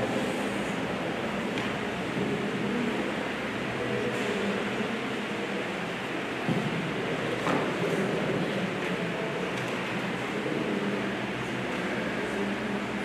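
Steady room hum, like a fan or ventilation running, with a couple of faint knocks past the middle.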